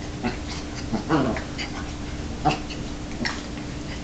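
Two dogs, an Akita and a Chihuahua, play-wrestling, with about four short separate dog vocalizations; the one about a second in falls in pitch.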